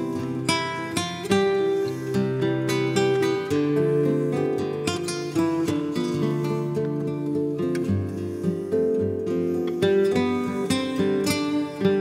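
Two nylon-string flamenco guitars playing a flamenco-jazz duet, quick plucked melody notes over held bass notes.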